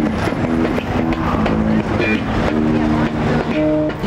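Busy city street sound: traffic and voices in a steady jumble, with held pitched tones over it that change in steps.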